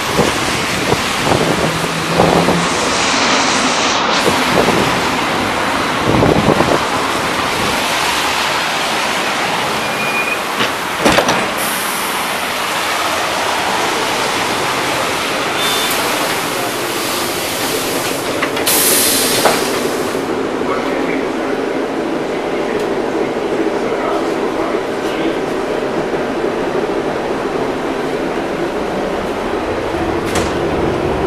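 LM-99AVN tram: it pulls in with wind on the microphone, gives a few short hisses in the middle while stopped with its doors open, then moves off along the rails with a steady motor hum.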